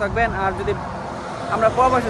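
A man talking, with a steady low outdoor rumble underneath that is left on its own during a short pause in the middle.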